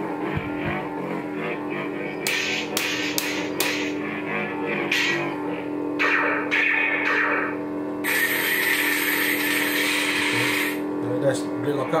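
Proffie-board lightsaber sound font playing through the saber's speaker: a steady electric hum, with several bursts of hissing, crackling noise laid over it, the longest lasting about three seconds from around eight seconds in.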